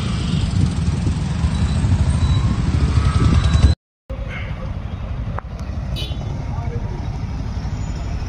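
A group of motorcycles running together with a steady low engine rumble. The sound cuts out briefly a little before halfway, then carries on slightly quieter.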